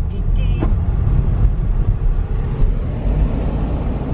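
Inside a 4x4's cabin: steady low rumble of the engine and tyres as the car wades along a flooded road, with the swish of water thrown up by the tyres.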